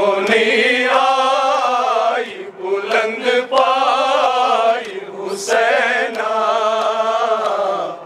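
A group of men chanting a Kashmiri noha (Shia lament) in unison, in three long, wavering sung phrases with short breaks between.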